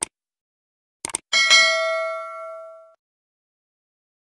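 Subscribe-button animation sound effects: a mouse click, then a quick double click about a second in, followed by a notification bell ding that rings out for about a second and a half.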